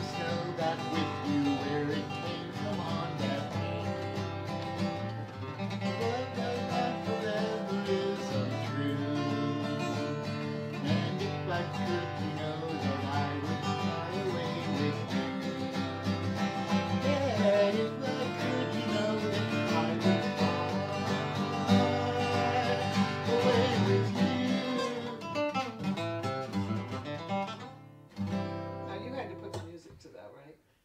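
Acoustic guitar playing a song with chords and a moving melody line. The song comes to an end shortly before the close.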